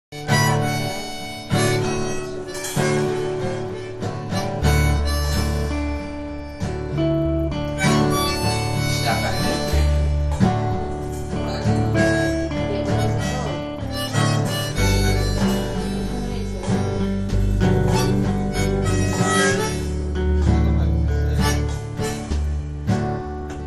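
Instrumental song intro: harmonica playing a melody over guitar, with deep bass notes underneath, in a folk-blues style.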